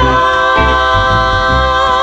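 Several women's voices singing a held chord in close harmony, with vibrato, coming in suddenly at full volume after a brief silence, with bass notes pulsing underneath.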